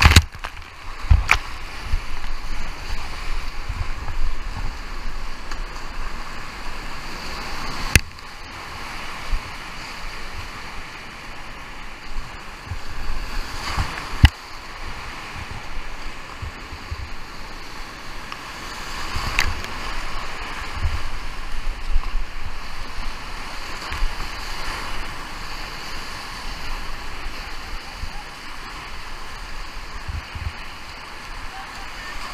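Rushing high-water whitewater rapids heard close up from a kayak, with water splashing and sloshing over the boat and camera. Sharp knocks break through about five times, at the very start, a second in, and near 8, 14 and 19 seconds in.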